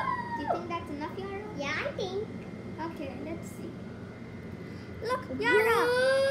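Children's voices: brief exclamations and vocal noises without clear words, ending in a long drawn-out voiced call near the end.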